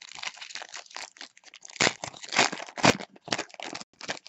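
Foil wrapper of a Bowman Draft baseball card pack being torn open and crinkled by hand: an irregular crackling, with a few louder crinkles about two and three seconds in.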